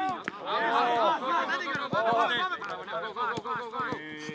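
Men's voices calling out over one another, with the sharp thud of a football being kicked about once a second.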